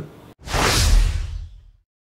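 Whoosh transition sound effect with a low boom underneath. It swells about half a second in and fades away over the next second.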